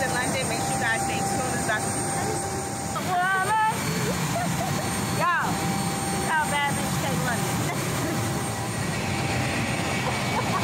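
Steady rushing noise with a thin high whine from a business jet running on the apron; the whine drops out for a few seconds in the middle.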